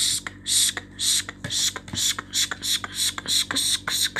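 A person making rhythmic hissing mouth sounds, short sharp bursts about two a second, like a beatboxed hi-hat.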